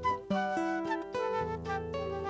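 A metal transverse flute playing held melody notes over a nylon-string classical guitar picking individual notes.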